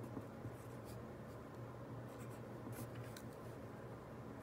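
Ballpoint pen writing on lined notebook paper: a run of short, faint, irregular scratching strokes as the characters are formed.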